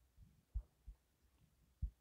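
Three faint, short, low thuds against near quiet: desk and handling knocks as a stylus writes on a drawing tablet.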